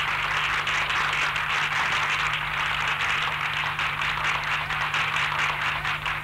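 A dense, even clatter of many rapid taps with no tune, over a low steady hum.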